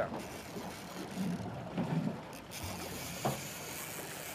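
Steady wind and water noise around an open boat on choppy water, with a single sharp click about three seconds in.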